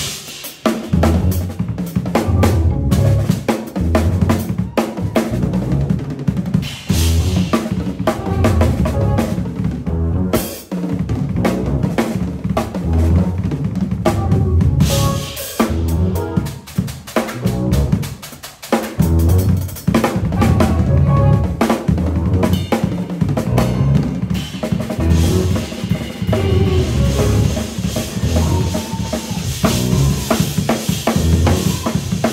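Acoustic drum kit played busily and loudly in a live jazz fusion groove, with kick, snare, rimshots and cymbals dense throughout. Bass and keys sound underneath, lower in the mix than the drums.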